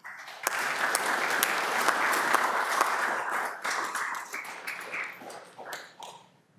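Audience applauding, dying away over the last second or so.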